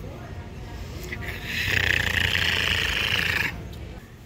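Electronic sound effect from a battery-operated Halloween toy spider, triggered by hand: a raspy, buzzing hiss that lasts about two seconds and cuts off suddenly.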